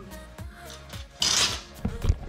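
A short rasping scrape a little past halfway, from the steel tape measure being handled against the floor and door lining, over faint background music.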